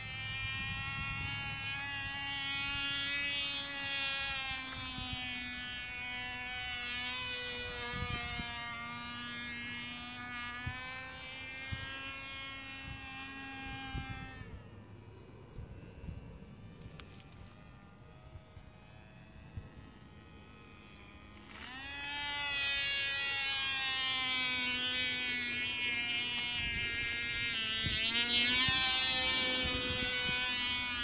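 Cox .049 Tee Dee two-stroke glow engine running at high speed in a model airplane in flight, a thin high buzz whose pitch wavers as the plane moves about the sky. About halfway through it grows faint for several seconds, then comes back louder with the pitch rising.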